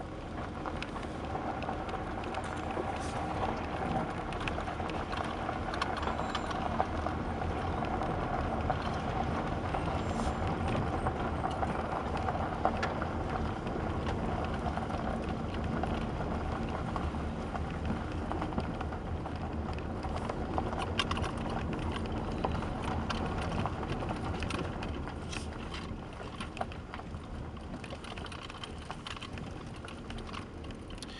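Vehicle cabin noise while driving on a gravel road: the engine hums steadily under the rumble of tyres on gravel, with scattered clicks and rattles.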